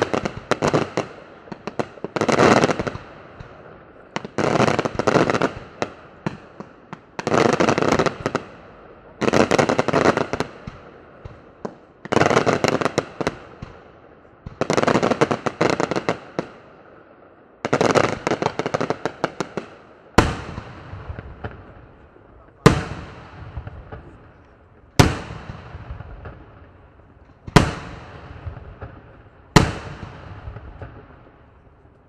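Daylight aerial fireworks display: about every two seconds a salvo of rapid crackling reports goes off, each cluster lasting about a second. About two-thirds of the way through these give way to single sharp booms about every two and a half seconds, each ringing on as it dies away.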